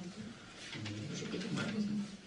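A man's low voice making indistinct drawn-out sounds, several short stretches with brief gaps, in a small room.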